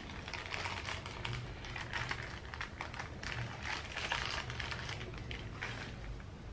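A small clear plastic bag crinkling as it is handled and opened, a dense, irregular crackling, with light clicks of small metal jewelry tipped out onto a table. It stops near the end.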